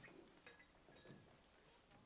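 Near silence: room tone with a few faint soft knocks.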